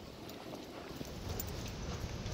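Footsteps on a dirt trail, with a low rumble of the phone's microphone being jostled while walking, growing after about a second.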